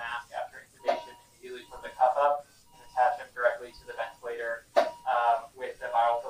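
Speech: people talking back and forth in a room, with a faint steady tone underneath at times and a sharp click about five seconds in.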